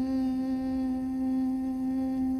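A person humming one long, steady note.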